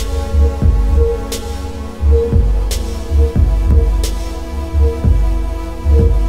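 Electronic music played live from a laptop set: deep bass pulses with falling, kick-like thuds over a steady drone, and a sharp high click about every second and a half.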